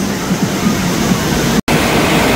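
Wave pool surf rushing in, a steady loud wash of water in a large indoor hall, broken by a short gap about one and a half seconds in.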